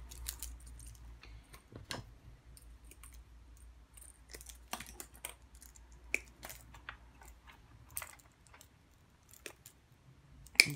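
Faint, irregular small clicks and taps of plastic shower parts and wiring being handled and moved about, over a low steady hum.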